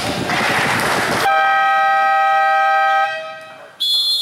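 A loud burst of noise, then a basketball game horn sounding one steady blast of about two seconds, then a short high referee's whistle near the end.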